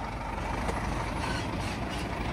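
Scania tipper lorry's diesel engine running steadily, with the tipping trailer body raised.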